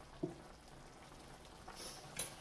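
Beef broth and flour gravy sizzling faintly in a hot cast-iron skillet, with one light knock of a wooden spatula a fraction of a second in.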